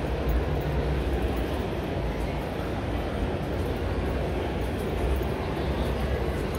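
Steady low rumble and dense background noise of a large exhibition hall, with no single sound standing out.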